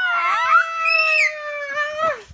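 A young girl's long, drawn-out vocal cry held on one high note that slowly sinks in pitch, made in play and laughter.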